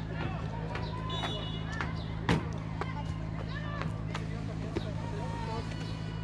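Field-side sound of an amateur football match: distant shouts and calls from the players over a steady low hum, with one sharp thump about two seconds in, typical of a ball being kicked.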